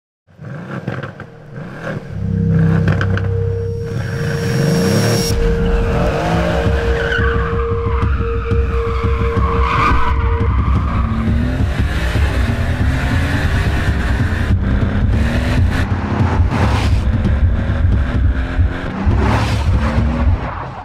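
Mercedes-AMG C-Class Coupé drifting: the engine revs up again and again in rising sweeps while the tyres squeal and skid. The sound builds from silence in the first two seconds, and the tyre squeal is loudest in the middle.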